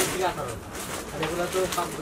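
Indistinct voices talking quietly, with no clear words.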